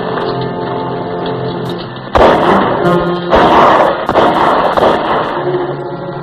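Orchestral film score, then from about two seconds in a burst of distant rifle fire, several shots in quick succession with echoing tails, rings out over the music. The shots come from repeating rifles.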